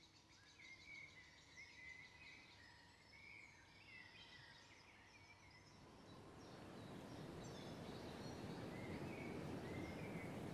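Faint birdsong: short chirps and twitters over quiet outdoor ambience, which grows louder in the second half.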